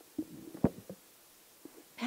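Handheld microphone being handed over and gripped: a few short handling thumps, the loudest about two-thirds of a second in.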